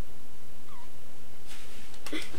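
A single short, faint call that glides in pitch, like a small animal's, about a second in, over steady background hiss. A soft rush of noise comes in near the end.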